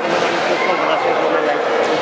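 A man's voice talking over background chatter in a reverberant sports hall.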